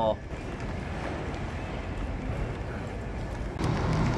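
A steady rushing noise in a large station, then about three and a half seconds in, the low steady hum of a ScotRail Class 170 Turbostar diesel multiple unit's underfloor diesel engine idling at the platform.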